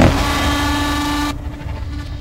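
Edited soundtrack: a sudden hit, then a steady droning tone that cuts off after about a second and a quarter, leaving a quieter low rumble.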